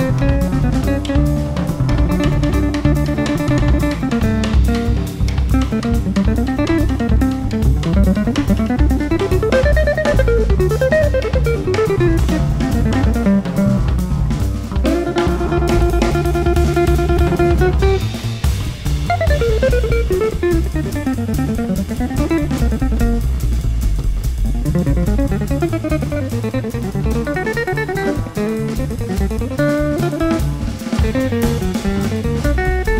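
Jazz trio of guitar, upright bass and drum kit playing uptempo. The guitar plays quick rising and falling lines, with held notes near the start and again about halfway, over a steady bass and drums.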